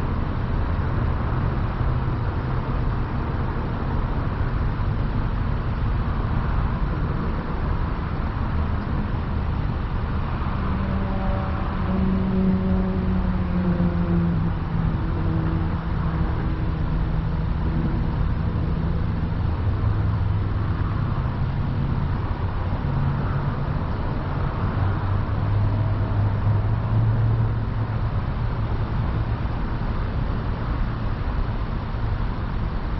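Car engine idling with a steady low rumble while the car stands still. From about ten seconds in, a pitched engine note falls slowly for several seconds, and a lower engine hum rises and falls near the end.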